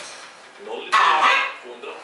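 A green-winged macaw calling: one loud, rough call about a second in, with softer vocal sounds just before and after.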